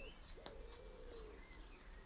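Faint bird calls: one low drawn-out note lasting about a second and a couple of thin high chirps, over near silence.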